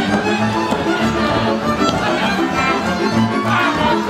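Hungarian folk dance music from the Szatmár (Tyukod) tradition: a fiddle plays the melody over a steady, rhythmic string accompaniment with repeating bass notes.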